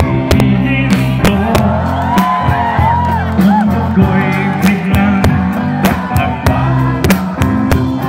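Live rock band playing through PA speakers: a steady drum beat under bass and electric guitar, with a singer's voice over them.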